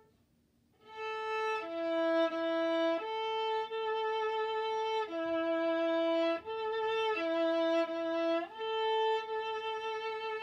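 Viola bowed solo. After a short rest it plays a slow line of long held notes that moves back and forth between two pitches a fourth apart.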